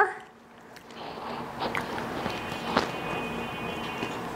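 People chewing and biting fried singaras, with a few sharp mouth clicks and smacks. A faint high-pitched tone sounds over the second half.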